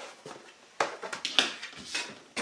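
A Fiskars plastic cutting mat being lifted off fabric and set aside, with a few quick clacks and rustles about a second in.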